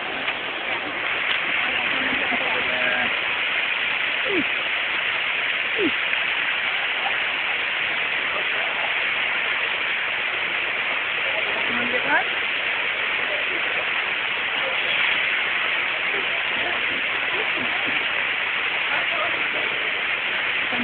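Steady rush of water pouring down an artificial rock waterfall, with faint snatches of people's voices now and then.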